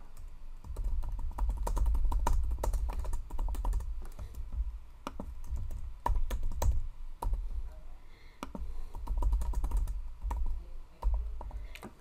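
Typing on a computer keyboard: a run of irregular key clicks with short pauses, over a low rumble underneath.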